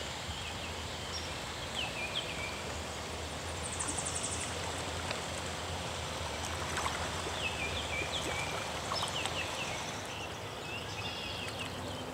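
Floodwater running over the grass in a steady rush, with small birds chirping in short falling phrases several times and a brief high buzzy trill about four seconds in.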